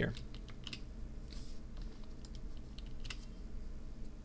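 A few faint, scattered computer keyboard clicks over a steady low hum.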